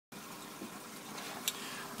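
Water splashing and bubbling steadily at the surface of a fish tank where a pipe enters the water, with one brief sharp tick about one and a half seconds in.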